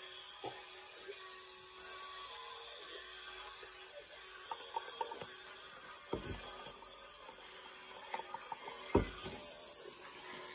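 Quiet scattered light clicks, with two dull knocks near the microphone about six and nine seconds in, the second one louder; the sound of something being handled and bumped close to the phone.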